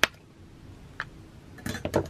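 Light handling clicks and taps from hands working a felt craft piece: a sharp click at the start, a smaller one about a second in, and a short cluster of taps and rustling near the end.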